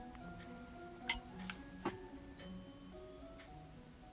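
Three sharp metallic clicks from a brass Zippo lighter being handled in the fingers, between about one and two seconds in, over soft background music with sustained notes.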